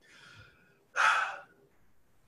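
A man breathing: a faint breath, then a louder, short breath about a second in, with no voice in it.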